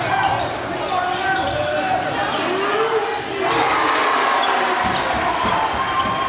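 Basketball being dribbled on a hardwood gym floor, with voices calling out across the gym.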